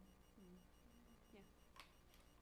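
Near silence: room tone with a few faint, murmured voice fragments.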